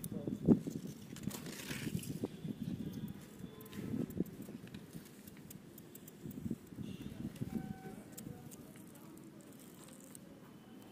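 Hands pressing and rubbing a sticker strip onto a motorcycle wheel rim, in irregular bursts of handling noise, with a sharp knock about half a second in.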